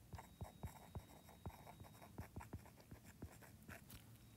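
Faint taps and scratches of a stylus writing on a tablet's glass screen: a string of small, irregular ticks.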